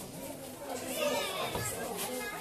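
Faint background voices, children's among them, talking and calling at a distance, with no close speech.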